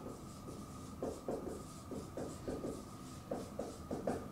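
Dry-erase marker squeaking and rubbing on a whiteboard in a quick, uneven run of short strokes as a word is written out.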